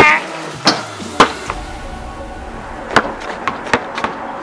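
A basketball bouncing: two sharp thuds in the first second and a half, then three more, closer together, near the end.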